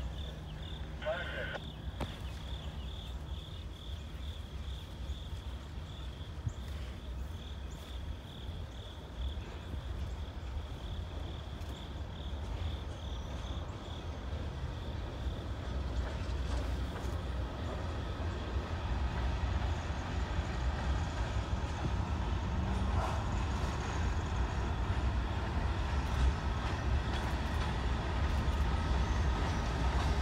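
Approaching CSX freight train's diesel locomotive, a low steady rumble that grows gradually louder as it nears. Insects chirp in a steady high pulsing tone during the first half, fading out around the middle.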